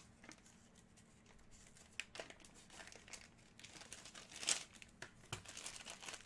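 Packaging crinkling and rustling faintly as hands unwrap a card, with the clearest rustle about four and a half seconds in and a small knock just after.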